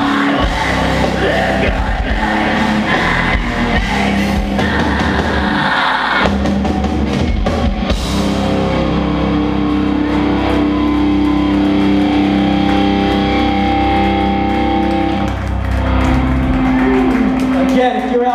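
Live metalcore band playing loud distorted electric guitars, bass and drums, with shouted vocals. About eight seconds in the cymbals and drumming drop away, leaving held, ringing guitar chords that shift to new notes near the end.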